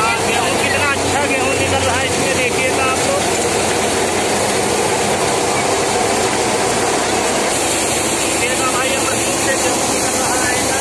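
Tractor-driven wheat thresher running at working speed: a loud, steady mechanical din of the threshing drum, sieves and tractor engine, while threshed grain pours out of the chute.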